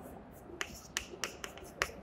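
Chalk writing on a blackboard: a handful of short, sharp taps and clicks of the chalk stick against the board at irregular intervals.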